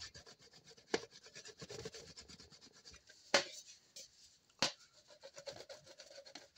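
A teflon rod rubbed and pressed against the inside of a thin sheet-metal phonograph horn, working out its dents: faint, quick scraping strokes with three sharper clicks spread through.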